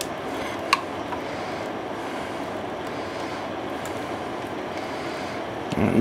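Steady rushing kitchen background noise from the stovetop, with a single light tap of a utensil a bit under a second in.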